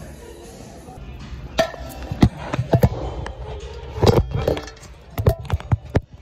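A run of sharp knocks and clacks, about six spread over a few seconds, typical of golf balls and putters on an indoor mini-golf course, over background music.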